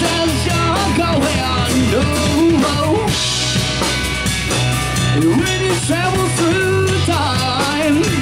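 Live rock band playing: drum kit, bass and electric guitar, with a lead melody bending up and down in pitch over a steady low end.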